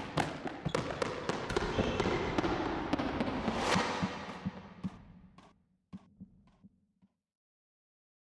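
Logo sound effect of a ball bouncing: a noisy swell dotted with sharp hits that builds to about four seconds in and fades, then a few separate bounce hits, each fainter, dying out about seven seconds in.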